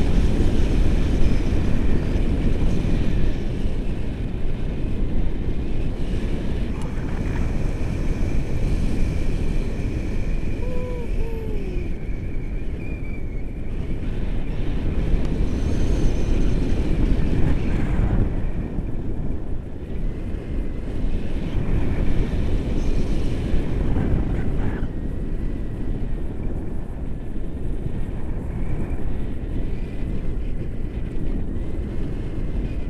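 Steady rush of airflow on the microphone of a pole-mounted camera during a tandem paragliding flight, strongest in the low end and rising and falling slightly. A few faint short tones sound briefly near the middle.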